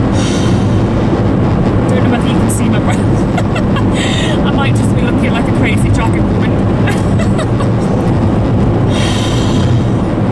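A woman singing along to music inside a moving car, over the steady low drone of the engine and road noise.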